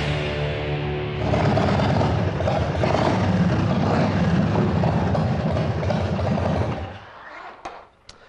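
Rock theme music for about the first second, then a custom chopper's 100 cubic inch RevTech V-twin engine running loudly as the throttle is worked, dropping away near the end.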